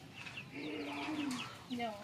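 A bird's low cooing call: one long note, then a shorter falling one near the end, with faint high chirping behind it.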